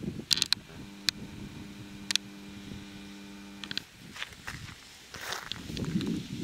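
A handheld video camera being handled: sharp clicks, then a steady low mechanical hum for about three seconds that fits a zoom motor, ending in another click. Low rustling handling noise follows near the end.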